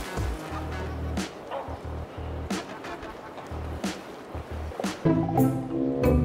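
Water splashing and rushing as a person wades deeper into a river, under background music. A fuller string-music passage starts near the end.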